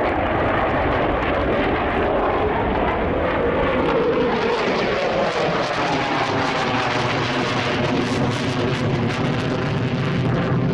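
F-15 fighter jet's twin turbofan engines, loud and steady as the jet flies overhead, with a tone in the noise that falls in pitch about four seconds in.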